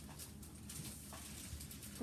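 Quiet kitchen with faint, soft handling sounds of a halved avocado and a plastic avocado slicer being worked by hand, with a soft low bump about one and a half seconds in.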